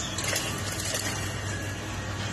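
Water boiling in a steel pot over a steady low hum, with a few faint soft knocks as chicken meatball mixture is dropped in from a bowl.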